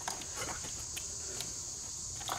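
Light clicks and rustling of an engine wiring harness and its plastic injector connectors being handled, under a steady high-pitched whine.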